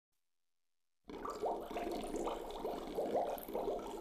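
Bubbling-water sound effect: a stream of quick rising bloops that starts about a second in.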